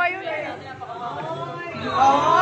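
Several people's voices talking over one another: overlapping chatter from a roomful of students, with no single voice clear.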